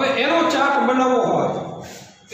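A man's voice drawing out a long, held vowel sound, its pitch bending slightly and fading toward the end.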